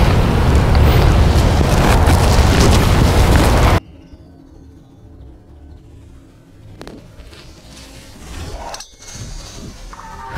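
Loud wind rumble on the microphone that cuts off suddenly about four seconds in. After a quiet stretch, a single sharp click about seven seconds in: a driver striking a teed golf ball.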